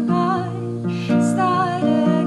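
A woman singing a slow, gentle song to her own acoustic guitar accompaniment.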